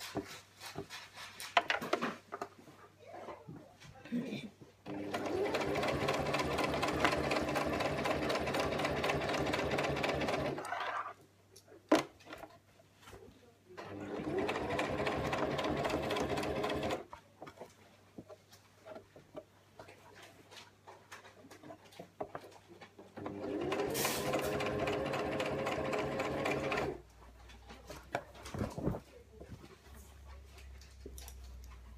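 Electric sewing machine stitching in three runs of a few seconds each, the motor's pitch rising as each run starts. Between runs the machine stops while the unpinned fabric is repositioned, with small clicks and rustles of handling.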